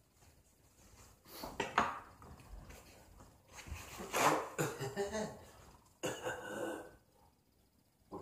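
Handling sounds at a table: a few sharp clicks of a spoon against a cup, then about four seconds in a sheet of paper towel torn off a roll and rustled, with another rustle a couple of seconds later.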